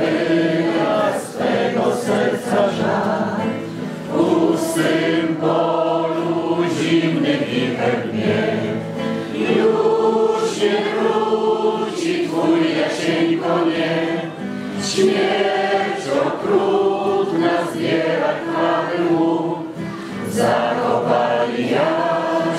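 A group of voices singing together in chorus, a slow song with long held notes.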